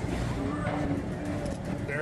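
Steady low rumble of a moving Tomorrowland PeopleMover car, with faint voices under it.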